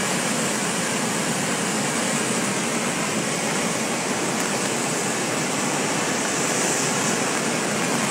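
A large waterfall in heavy spate, giving a steady, even rush of falling water heard from well above it. It is swollen with an unusual volume of muddy floodwater.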